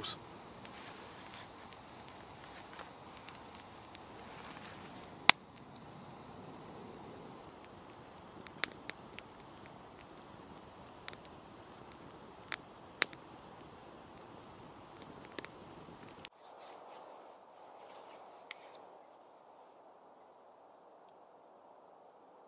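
Small wood fire of twigs and kindling burning in a folding steel Bushbox stove: scattered sharp crackles and pops over a steady hiss, one loud pop about five seconds in. About sixteen seconds in the sound drops to a thinner, quieter outdoor background.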